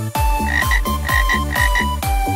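Cartoon frog croaking sound effect, three quick pairs of short croaks, over a children's song backing track with a steady drum beat.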